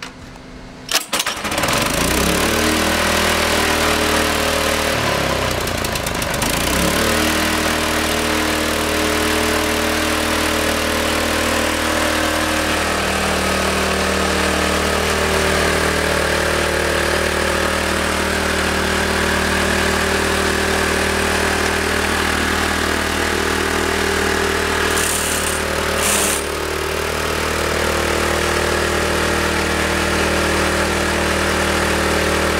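A Von Arx SASE 10-inch concrete scarifier's Honda 9 hp single-cylinder engine is pull-started and catches after a couple of pulls about a second and a half in. It then runs steadily while the cutter drum grinds across the concrete slab, with a dense hiss over the engine note. The note shifts a few times and dips briefly near the end.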